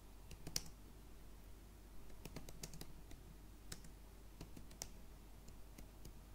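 Faint computer keyboard typing: key clicks coming in short irregular bursts as words are typed.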